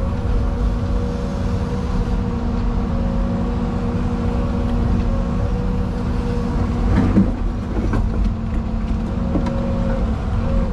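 Excavator's diesel engine and hydraulics running steadily, heard from inside the cab, with a steady whine over a low rumble as the arm swings the empty bucket; one knock about two-thirds of the way through.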